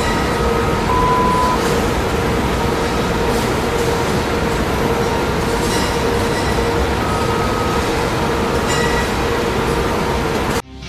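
Food-processing line machinery running with a steady mechanical noise and a constant hum. A short, higher tone sounds about a second in and another around seven seconds.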